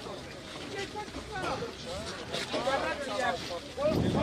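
Speech: men's voices talking in an outdoor crowd.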